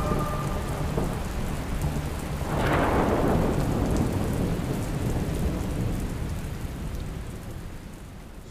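Steady heavy rain with a thunderclap swelling about two and a half seconds in, the storm fading toward the end.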